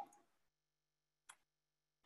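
Near silence, with one faint click a little past halfway.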